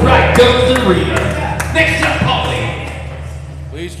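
Loud overlapping voices in a noisy bar over a steady low hum, with a few sharp knocks. The sound thins out about halfway through.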